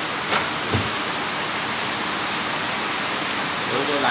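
Steady rushing hiss of running water, with a sharp click about a third of a second in and a dull knock just after.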